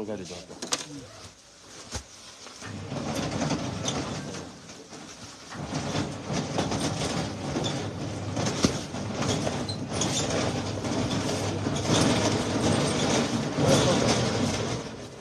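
Indistinct chatter of many overlapping voices in a crowded shop, with scattered small clicks and rustles, growing louder about two and a half seconds in.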